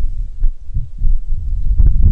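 Wind buffeting an outdoor microphone: a loud, uneven low rumble that swells and fades.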